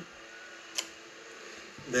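A single sharp click from an Olfaworks SG1-OD fixed-blade knife being drawn from its hard black sheath, the sheath's retention letting go of the blade.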